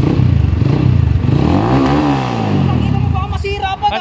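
Rusi motorcycle engine idling, then revved once: the pitch climbs to a peak about two seconds in and falls back to idle a second later, a throttle test after the cable adjustment.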